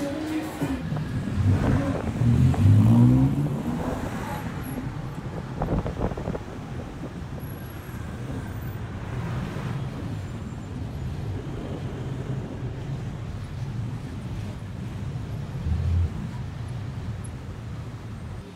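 Engine of a small open vehicle revving up through rising pitch as it accelerates about two seconds in, then running steadily amid the noise of heavy city traffic, with a brief low surge near the end.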